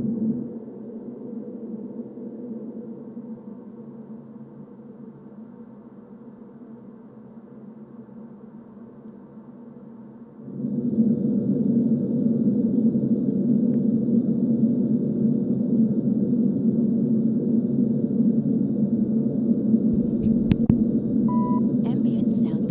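Airplane cabin noise, a steady low rumble, heard through Sony WH-1000XM5 headphones with noise cancelling on: it drops sharply, then fades further over the next few seconds. About ten seconds in, it jumps back to full level as heard through WH-1000XM4 headphones in ambient mode, and a short beep sounds near the end.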